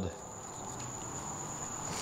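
Quiet room tone with a steady, faint high-pitched whine.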